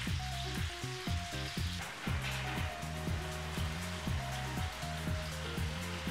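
Quartered mushrooms sizzling in hot olive oil in a frying pan as they are stirred, a steady hiss, under background music.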